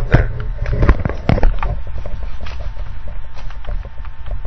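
Handling noise from a sticker being put on a computer close to the microphone: a few knocks in the first second and a half, then light rustling and ticking, over a steady low hum.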